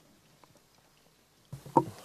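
Faint room tone. About one and a half seconds in, a microphone channel opens, the background hiss jumps up abruptly, and a brief loud thump follows, as from the microphone or the desk in front of it being knocked.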